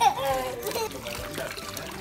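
Water from a garden hose running and splashing into an inflatable paddling pool, with a child's voice briefly in the first second.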